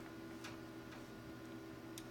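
Quiet room tone: a faint steady hum, with a single faint click about half a second in.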